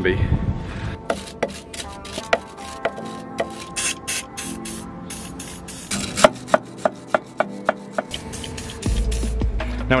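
A wire brush scrubbing the threads of a suspension drop link's ball joint in short, irregular scraping strokes, about two or three a second, to free grime before the nut is undone. Background music runs underneath.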